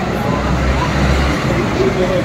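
Busy city street ambience: a steady wash of street noise with a low rumble through the first second or so, and scattered voices of passers-by.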